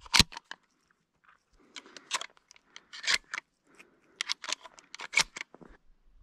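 Close-up handling and movement noise: irregular crisp clicks and short rustles, with the loudest pair of clicks right at the start. It is typical of gear being handled and footsteps on dry ground.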